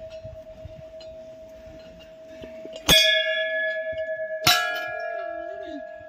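Hanging temple bells struck twice, about three seconds in and again a second and a half later, each strike sharp and then ringing on with many high tones; a steady bell hum from earlier strikes sounds underneath throughout.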